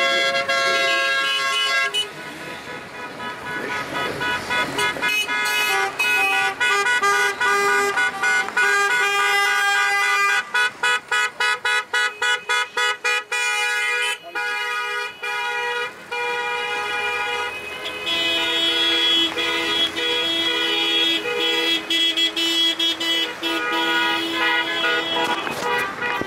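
Many car horns honking together from a slow motorcade, overlapping into a loud, chord-like blare. Through the middle several horns beep in quick repeated toots, and near the end long held horn notes take over again.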